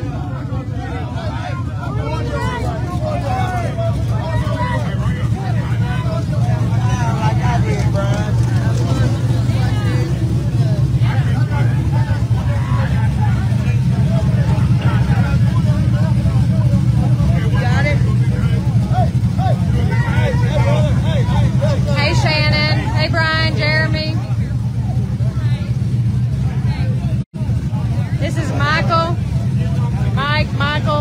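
Pontiac Trans Am drag car idling with a steady, loud low rumble close by while it waits to stage, under the chatter of a crowd of spectators.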